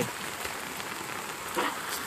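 Steady rain falling on shallow puddles of muddy water. A brief voice cuts in about one and a half seconds in.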